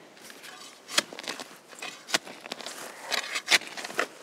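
Hand pruners snipping at the base of a clematis being dug up, a few sharp clicks spread out, with rustling and scraping in soil and foliage.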